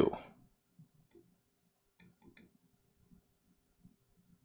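Four short, sharp clicks at a computer: one about a second in, then three in quick succession about two seconds in.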